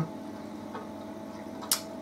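Low steady hum with a faint steady tone from running aquarium equipment, the tank's water circulation moving the surface. A single sharp click sounds near the end.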